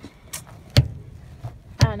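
Two sharp knocks about a second apart as a car sun visor is handled and flipped down from the headliner.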